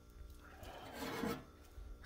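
Faint, brief rustle of clothing and handling, peaking about a second in, as a knife is raised into view.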